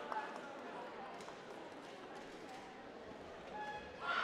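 Faint chatter of voices echoing in a sports hall, with a few light knocks.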